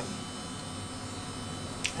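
Steady electrical hum with hiss, the room tone of a small room, with one short click near the end.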